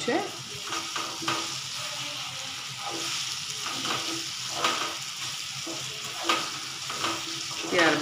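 Raw mango cubes and sugar sizzling in hot oil in a nonstick frying pan while a slotted spatula stirs them, with irregular scraping strokes against the pan.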